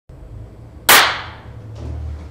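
A single sharp bang about a second in, the loudest thing here, dying away quickly in the room's echo, over a steady low hum.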